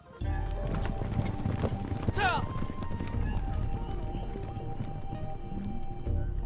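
Hoofbeats of two horses galloping, with a soundtrack score playing over them. About two seconds in, a horse whinnies once with a falling pitch.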